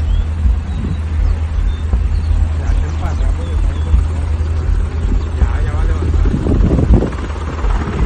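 Indistinct voices over a steady, loud low rumble.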